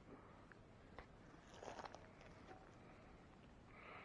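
Near silence, with a few faint soft clicks and rustles about a second in and again a little later.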